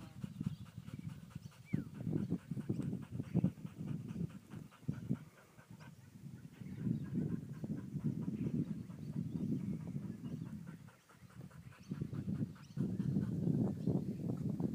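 Kelpie sheepdog panting in runs of quick breaths, broken by short lulls about a third of the way in and again near the end.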